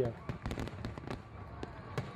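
Fireworks sound effect: a rapid, irregular run of small pops and crackles.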